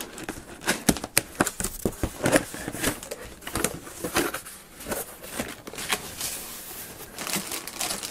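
A cardboard box being opened by hand: flaps pulled up and folded back, with irregular scrapes, taps and clicks, and plastic bags of kit parts crinkling near the end.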